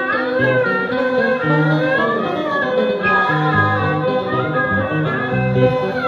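Ceremonial music from plucked and bowed string instruments, a melody with sliding notes over held low notes.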